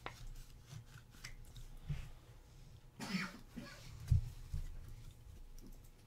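Quiet handling of trading cards and plastic card sleeves: scattered small clicks and rustles with a couple of soft low thumps on the desk. A short throat sound, like a cough, comes about three seconds in.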